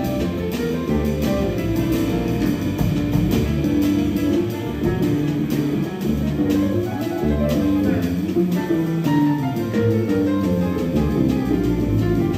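Jazz piano trio playing live: grand piano, plucked upright double bass and drum kit with cymbals. The music plays at a steady level with no pause.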